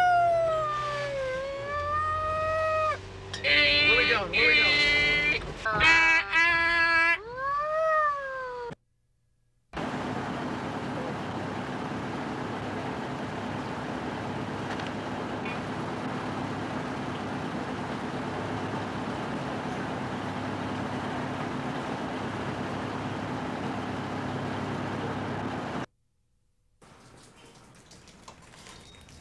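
Fire engine siren wailing up and down, with several horn blasts a few seconds in, heard from inside the cab as the truck runs a red light on an emergency call. After a cut to a second of silence, a steady rushing noise with a low hum carries on for most of the rest.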